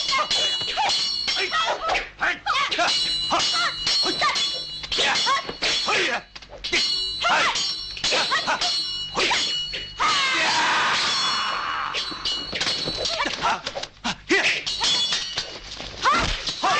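Martial-arts film fight soundtrack: rapid dubbed strikes and weapon clashes with fighters' shouts and grunts, over music. A longer noisy crash comes about ten seconds in.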